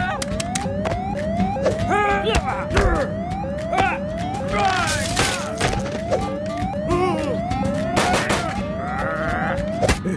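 Cartoon siren from a car's red beacon, a short rising whoop repeated about twice a second, with squeaky cartoon voice cries and effects over it.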